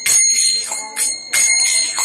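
Small brass hand cymbals (kartals) struck together in a steady rhythm, about three clashes a second, each leaving a high ringing tone.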